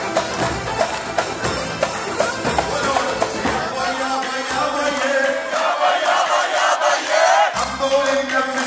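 Zaffe wedding music: pounding drums with a singer on a microphone and the crowd joining in. About halfway through, the drums drop away and high, wavering ululation (zaghareet) and crowd voices take over.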